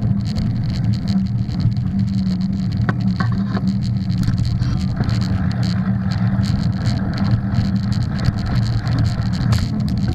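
Mountain bike rolling fast along a packed dirt trail, heard from a camera riding on the bike or rider: a steady low rumble of tyres and rushing air, with scattered rattles and clicks as it goes over bumps.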